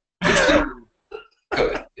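A man laughing: one loud burst near the start, then a few short, quieter bursts.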